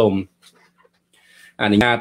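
A man talking in Khmer, pausing for about a second and taking a faint breath in before he speaks again.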